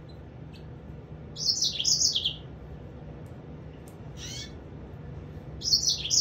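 Caged finches calling: two bursts of quick, high chirps, each note falling in pitch. The first burst comes about a second and a half in and the second near the end, with a single softer chirp in between.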